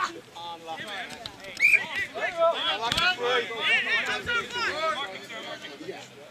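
Several men shouting and calling out over one another, with a single sharp knock about three seconds in.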